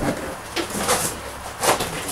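Packaging being handled as a wrapped light stand is pulled out of a cardboard box: a few short rustles and scrapes, the loudest near the end.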